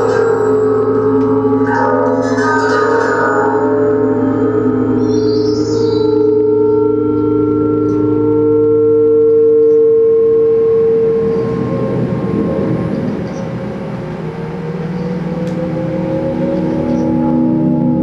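Electroacoustic drone music from UPIC-system and analog-synthesizer sounds: layered sustained electronic tones with bell- and gong-like overtones, one tone swelling loudest a little past the middle. After that the texture turns grainier and noisier, with tones gliding slowly upward near the end.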